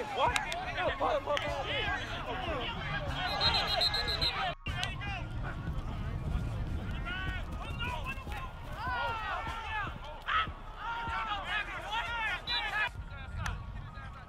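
Overlapping voices of people talking and calling out, with a low rumble beneath and a brief dropout about four and a half seconds in.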